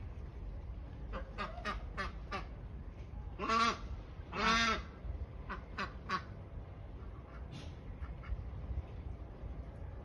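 Domestic geese and ducks calling: a run of short calls, then two longer, louder calls in the middle, then a few more short calls.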